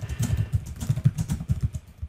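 Computer keyboard typing: a fast, steady run of keystrokes that stops shortly before the end.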